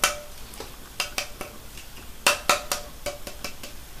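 Fingertips tapping the side of a shaken, sealed aluminium Coca-Cola can: a dozen or so light metallic taps in two runs with a short pause between. The taps are meant to settle the fizz before opening.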